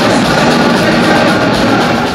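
Loud rock music played by a band with a full drum kit, drum strikes coming at a steady beat.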